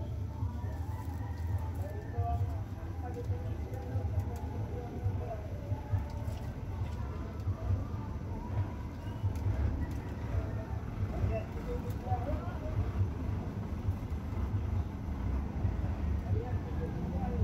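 A steady low rumble, with faint, indistinct voices behind it and a few light knocks as a cardboard box is set down and handled.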